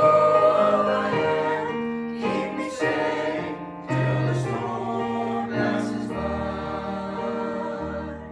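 A small church choir of men's and women's voices singing a hymn together in held notes, with a short breath between phrases just before the middle.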